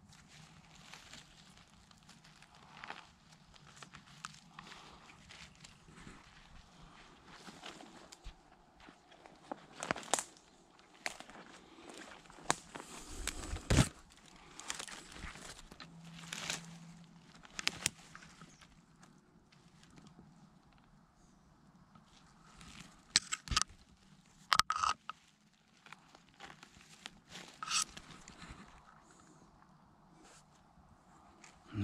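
Footsteps and rustling through dry pine needles and twigs on a forest floor, with irregular crackles and snapping twigs.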